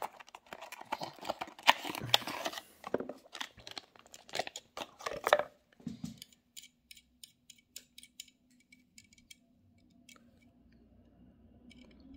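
Small cardboard box and plastic packaging of a 1:64 diecast model car being opened and handled: a dense run of crinkling, tearing and clicking for about the first six seconds, then only a few faint clicks as the car is handled.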